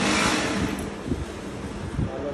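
Industrial single-needle sewing machine stitching a strip of fabric: a short loud burst of running at the start, then quieter running with a fast patter of needle strokes over the motor's hum.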